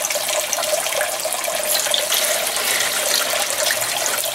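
Water poured by hand onto a gravel-filled plastic coffee-can planter, splashing and trickling steadily.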